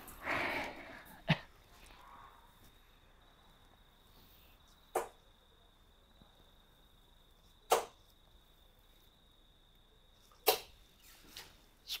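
Three darts striking a Winmau Blade 5 bristle dartboard, one sharp thud each, about five, seven and a half and ten and a half seconds in.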